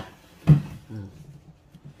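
A single sharp knock on a wooden speaker cabinet about half a second in, as its back panel is worked loose by hand.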